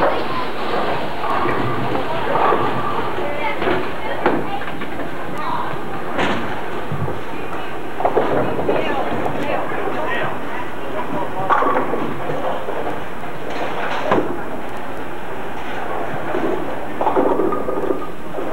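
Bowling alley din: steady background chatter of many voices, with a few sharp knocks of balls and pins from the lanes.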